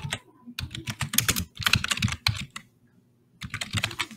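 Typing on a computer keyboard: a quick run of keystrokes, a short pause, then a few more keystrokes.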